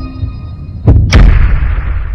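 Sound effect of a TV channel logo sting: a low hit, then two loud booms about a second in, a quarter second apart, with a deep rumble that rings on and fades.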